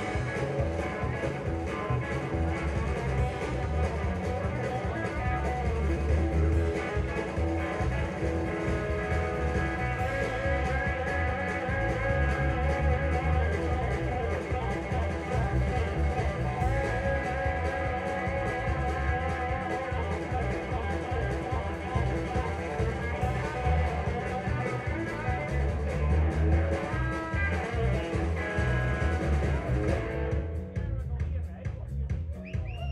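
Live blues-rock band playing an instrumental stretch, with guitar to the fore over a heavy bass line and no singing.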